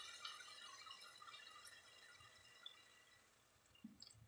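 Faint pouring of water into a pot of soaked mash dal and tomato masala, a splashing stream that fades away toward the end.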